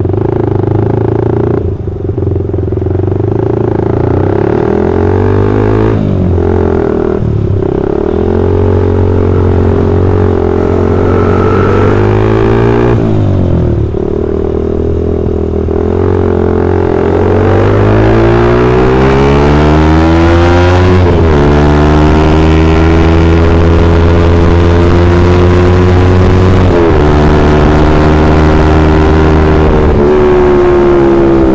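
Suzuki Satria FU 150 single-cylinder four-stroke engine heard from the rider's seat under hard acceleration. It is rising in pitch through the revs with sudden drops at the upshifts, and a few brief dips where the throttle is let off and opened again.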